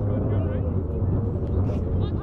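Faint shouts from players and sideline voices over a steady low rumble.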